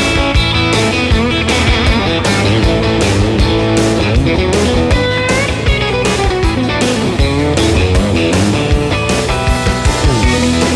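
Rock music led by electric guitar, with a steady drum beat and no singing.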